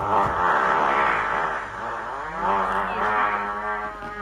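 Two long, pitched farts, one after the other. The first wavers in pitch; the second, starting just after two seconds in, holds a steadier tone.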